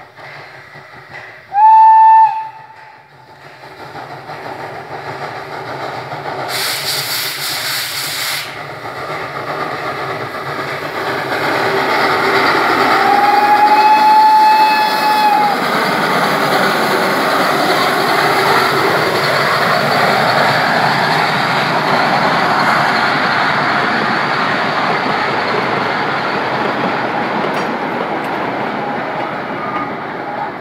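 Narrow-gauge steam locomotive giving a short, loud whistle, then drawing closer and whistling again for about two and a half seconds near the middle. The noise of the engine working and the carriages rolling grows as the train passes close by and stays loud to the end.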